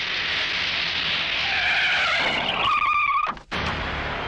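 Police jeeps (Maruti Gypsys) driving in fast and braking hard, tyres squealing in a skid for over a second before the sound cuts off abruptly near the end.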